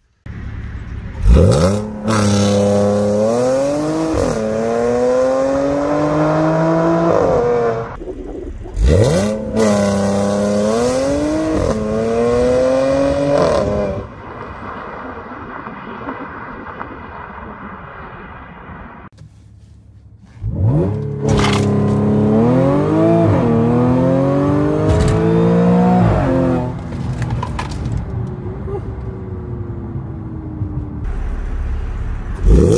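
Tuned Audi S5's supercharged 3.0-litre V6 pulling hard from a standstill on launch control, three times. On each run the engine note climbs steeply, drops at an upshift, climbs again and then cuts off.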